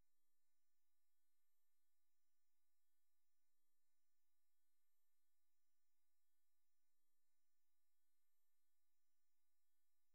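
Near silence: a pause in the narration with no audible sound.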